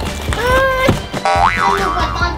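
Cartoon-style boing sound effects over background music: a springy tone that slides up and bends about half a second in, then a wobbling tone that swoops up and down twice near the middle.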